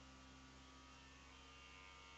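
Near silence, with only the faint steady hum of a small electric honey-suction pump drawing stingless-bee honey through a thin tube.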